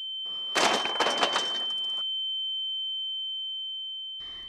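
A steady single-pitched high ringing tone used as a dramatic shock effect in the soundtrack, swelling and then fading out. Under it, a burst of noise runs from just after the start to about two seconds in.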